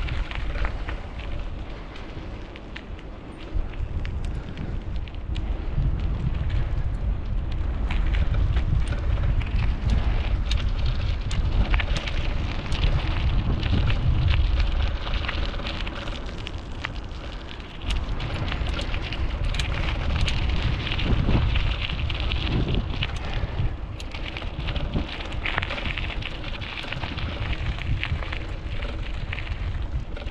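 Wind buffeting the microphone of a moving camera, a rumble that swells and fades, with steady crackling from rolling or stepping over gravel and rough concrete paving.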